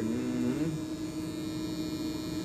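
Corded electric hair clippers buzzing steadily as they cut hair.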